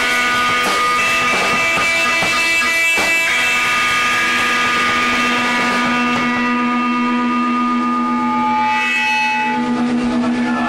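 Live experimental rock: a loud, sustained drone of held tones. Struck notes sound over the first three seconds, then the drone holds, and its higher tones fade after about six seconds.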